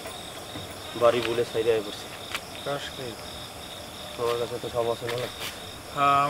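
Crickets chirring steadily and high-pitched in the night background, under a few short spoken phrases.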